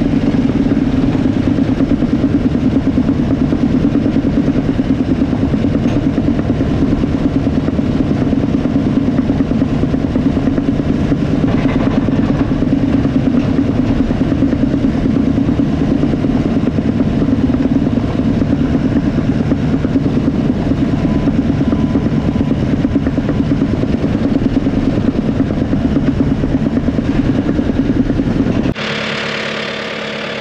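Bulldozer's diesel engine running steadily, heard close up from the operator's seat as the machine works. It stops abruptly at a cut near the end, leaving a quieter background.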